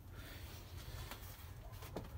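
Faint background: a low steady hum with light hiss, and one soft tick near the end.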